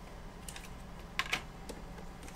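Light clicks and taps of a trading card being handled and set down on a playmat, the two sharpest close together a little past a second in.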